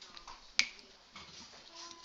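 A single sharp click about half a second in, over quiet room tone.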